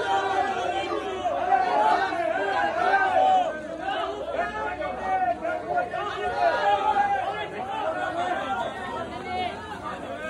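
A crowd of men calling out together, many voices overlapping with no single clear speaker.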